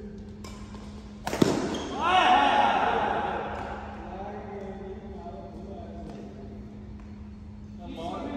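A sharp badminton racket strike on the shuttlecock about a second and a half in, ringing in a large echoing hall, followed straight after by a loud, drawn-out shout from a player that tails off over a couple of seconds. A steady low hum runs underneath.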